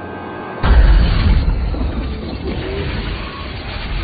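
Film soundtrack: a sudden deep boom a little over half a second in, which rolls on as a long rumble under dramatic orchestral score.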